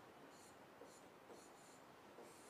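Faint scratching of writing on a board, in a few short strokes spread through the two seconds.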